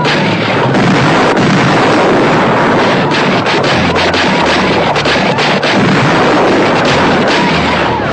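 Loud, dense battle noise: many gunshots and explosions packed close together in a continuous din.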